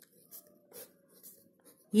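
Pen writing on notebook paper: a few faint, short scratching strokes.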